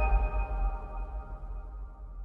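Closing logo sting: a sustained electronic chord of ringing tones over a deep low rumble, fading out steadily.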